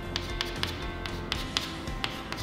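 Chalk tapping and scraping on a chalkboard as short strokes are drawn, an uneven run of sharp taps, about four a second.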